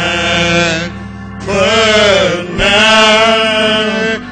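A man singing solo into a handheld microphone in long, drawn-out held notes, with a short pause for breath about a second in.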